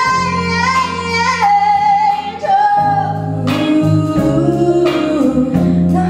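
A girl sings lead through a microphone over a live band of drums and guitar, holding long notes. About three seconds in, backing singers come in with a lower harmony line beneath her.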